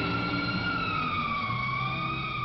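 A siren-like wailing tone in a rock track's intro, sliding slowly down in pitch and partly back up over a low sustained backing.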